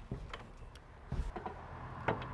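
A few faint, light knocks and clicks from a spirit level being set and shifted against a wooden door jamb while it is checked for plumb.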